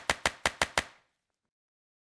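Six short, sharp pop sound effects in quick succession, about six a second, ending within the first second; an editing effect timed to the social-media icons popping onto the animated end card.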